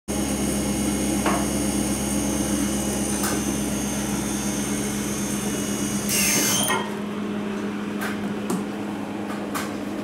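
Okuma VAC spindle drive running on a test rig, giving a steady electrical hum with a high whine. About six seconds in there is a short hiss and a falling tone, the deepest part of the hum drops away, and a few light clicks follow.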